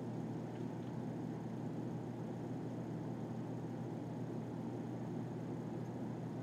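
Steady low hum and room noise, even throughout, with no clear music or speech.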